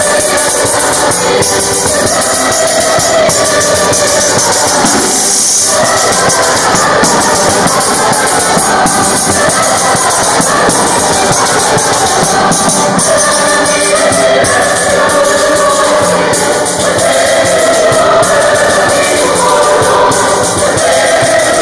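A polyphonic choir singing a folk-style song, accompanied by a diatonic button accordion (organetto) and a frame drum with jingles (tamburello).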